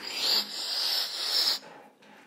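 A person making a long, hissing slurp with the mouth, sucking in air as if drinking spilled milk off a tabletop; it stops suddenly about one and a half seconds in.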